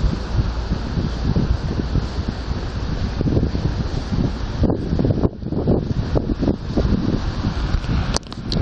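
Wind buffeting the microphone in irregular low gusts over a steady hiss of road traffic.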